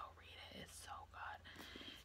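A woman whispering a few quiet words, breathy and without voice.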